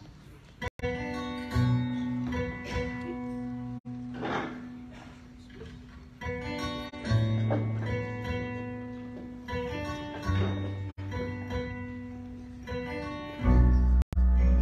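Live instrumental intro of a folk song on acoustic guitar, piano and electric bass, with a low bass note coming in every few seconds and the loudest bass note near the end. The sound cuts out for an instant three times.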